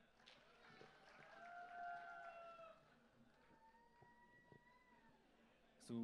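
Near silence in the hall, with two faint drawn-out tones: the first about two seconds long and falling slightly, the second about a second and a half.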